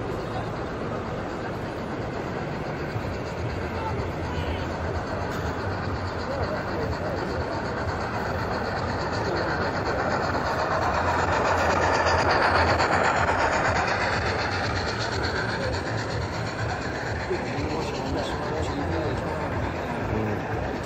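Hornby P2 OO-gauge model steam locomotive and its coaches running along layout track. The sound grows louder as the train passes close by about twelve seconds in, then fades. Crowd chatter runs underneath throughout.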